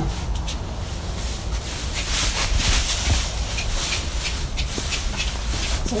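Shuffling and rustling in straw bedding as a man and a foal move about a stable, over a steady low rumble.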